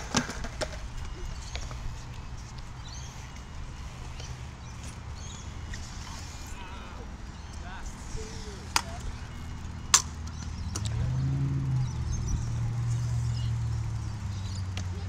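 Stunt scooters on a concrete skatepark ramp, with a few sharp knocks of deck and wheels on the surface, over a low steady rumble of road traffic that grows louder near the end.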